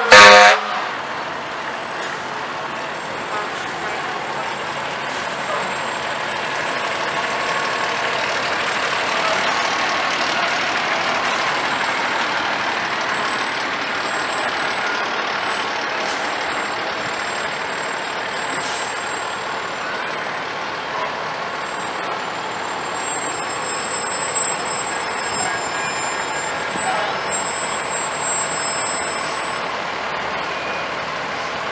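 Fire engines rolling slowly past, their engines running steadily, with a short, loud horn blast right at the start.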